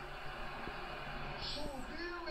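Football TV broadcast sound: a commentator's voice over continuous stadium crowd noise, heard through a television's speaker.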